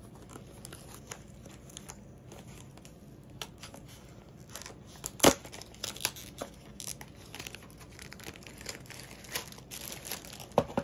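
Plastic packaging crinkling and rustling as a diamond painting kit is unpacked, with scattered crackles and one sharp snap about five seconds in.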